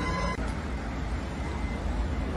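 Steady low rumble of background traffic and wind noise, with a brief high-pitched tone in the first third of a second.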